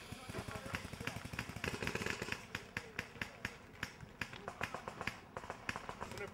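Paintball markers firing: sharp pops at irregular spacing, several a second, with voices in the background.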